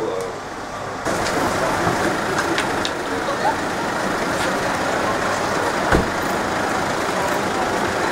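Steady street traffic noise, with a single short thump about six seconds in.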